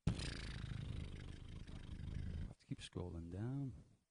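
A beatboxer's voice into the microphone: a rough, buzzing throat sound held for about two and a half seconds, then a couple of short clicks and a brief voiced note that rises and falls in pitch.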